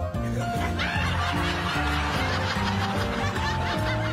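Background music with steady notes and a low beat, joined about a second in by many people laughing at once.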